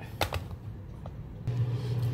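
Two quick knocks, then a steady low hum that starts about one and a half seconds in: a microwave running as it heats the snow crab legs.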